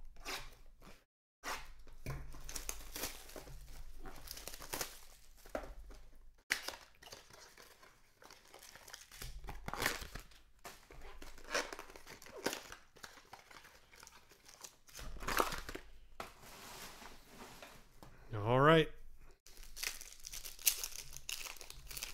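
Cellophane wrap and cardboard of a trading-card box crinkling and tearing as it is opened, with cards being handled and stacked in irregular rustles and clicks. A short voice sound comes about three quarters of the way through.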